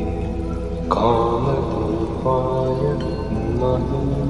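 Devotional mantra chanting set to music: long held notes over a steady low drone, with a new, louder phrase entering about a second in.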